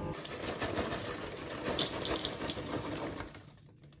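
Popped microwave popcorn rustling and tumbling out of its paper bag into a bowl: a dense rustle with light crackles, fading out near the end.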